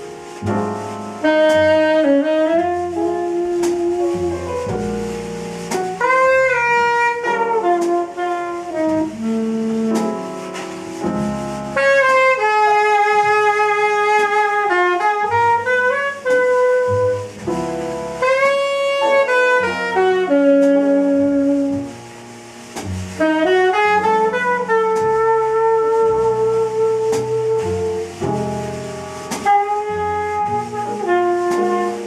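Tenor saxophone playing a slow jazz ballad melody in long held notes with slides between them, accompanied by double bass and drums.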